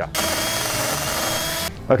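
Cordless drill running steadily for about a second and a half, then stopping abruptly.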